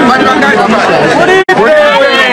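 Several people talking at once in a gathered crowd, with the sound cutting out for an instant about one and a half seconds in.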